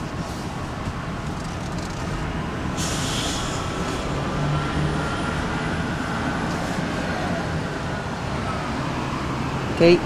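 Car interior noise while driving slowly: the engine running with a steady low hum under road noise, and a brief hiss about three seconds in.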